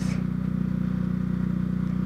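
Honda CB Twister's single-cylinder engine running with a steady, even note while the motorcycle cruises at about 30 km/h, heard from the rider's seat.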